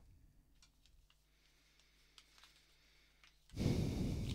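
Near silence with a few faint clicks, then a steady rushing noise that starts abruptly about half a second before the end.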